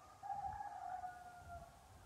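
A faint, distant animal call: one long drawn-out note, starting just after the beginning and lasting about a second and a half, sinking slightly in pitch.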